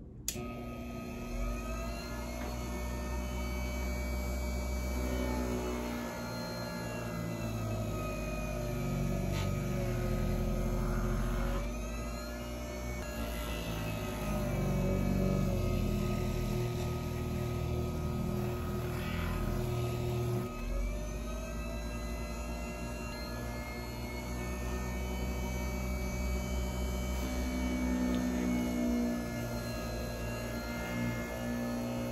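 Tandy Pro leather burnishing machine switched on, its motor starting suddenly and then running with a steady whine. The pitch sags and recovers several times as the edge of a leather notebook cover is pressed against the spinning burnishing wheel.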